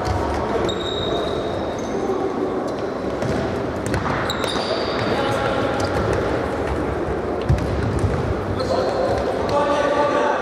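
Futsal ball being kicked and bouncing on a sports-hall floor, with short high squeaks of shoes on the court and players calling out, all echoing in the hall. One knock stands out, louder than the rest, about three-quarters of the way through.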